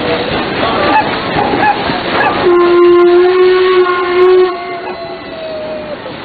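Paddle steamer's steam whistle blowing one long steady blast, starting about two and a half seconds in. It fades and sags slightly in pitch over its last second.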